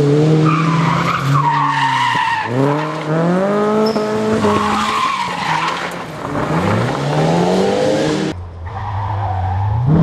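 Rally car engine revving hard through a corner, its pitch climbing in three repeated sweeps as the car slides across gravel, with tyre and gravel noise beneath. Near the end the sound cuts suddenly to another car's engine running at a steadier, lower pitch.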